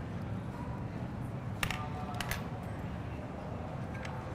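Steady low room noise with a few sharp, brief clicks near the middle, from metal dissection instruments being handled while skinning an alligator.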